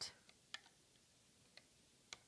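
Near silence with two faint, short clicks of a looming hook against the plastic Rainbow Loom pegs as rubber bands are looped up.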